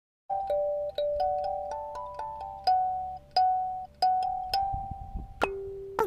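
A short chiming melody of about a dozen bell-like struck notes, each fading after it is hit, ending on a single lower note held near the end.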